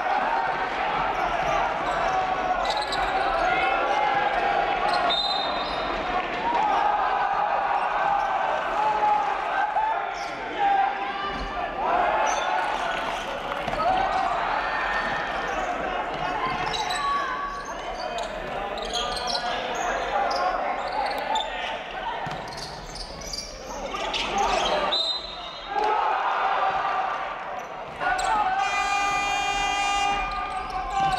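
Basketball game sound in a large hall: a ball dribbled on the hardwood court over a steady mix of voices from players and benches.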